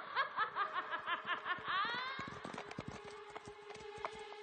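A high-pitched cackling laugh: a quick run of about eight short notes ending in a rising glide, followed by a low held note of music.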